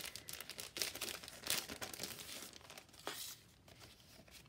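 A clear plastic sleeve crinkling, with paper rustling, as envelopes and letter sheets are slid out of it. The scratchy crackling comes in irregular bursts and dies down about three seconds in.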